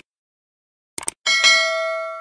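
Mouse-click sound effects, a quick double click about a second in, followed by a single bright bell ding that rings with several clear tones and slowly fades: the subscribe-button and notification-bell sound effect.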